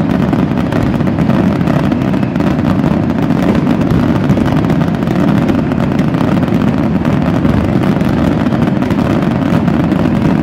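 Dense, continuous barrage of aerial fireworks: the bangs and crackles of many bursting shells run together into a steady, loud rumble with no gaps.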